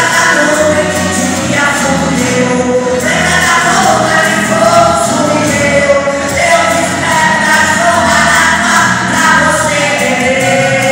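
A man singing a gospel worship song into a handheld microphone, amplified through a PA, with held and gliding notes over a musical backing.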